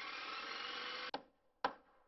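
Logo intro sound effect: a steady rushing sound that lasts about a second and cuts off suddenly, followed by two short swishes near the end.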